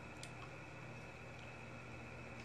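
Quiet room tone: a steady low hum with a couple of faint clicks early on.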